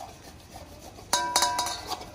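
A faint rasp of boiled sweet potato on a stainless steel box grater, then about a second in the steel grater knocks against the steel bowl several times, each clink ringing on.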